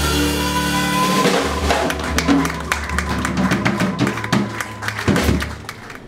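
Small jazz combo playing an instrumental passage without vocals: drum kit strokes and cymbals over sustained upright bass notes. It opens with a loud hit, and the music drops away near the end.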